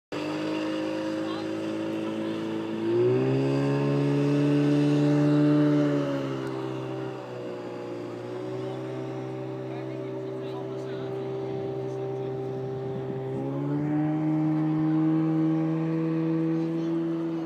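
Outboard motor of a small inflatable boat towing a ringo tube, running steadily. It revs up about three seconds in, eases back around seven seconds, and revs up again about thirteen seconds in.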